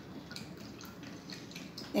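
Wooden craft stick stirring tempera paint into water in a plastic cup: faint, scattered light clicks and swishes as the stick knocks and sweeps around the cup.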